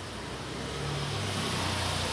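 A road vehicle going by: a low engine hum under a rushing noise that slowly grows louder.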